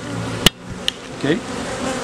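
Honey bees buzzing steadily around an open hive, with a single sharp knock about halfway through, and a lighter click a moment later.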